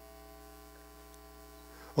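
Steady electrical mains hum: a low, unchanging buzz with a ladder of evenly spaced overtones.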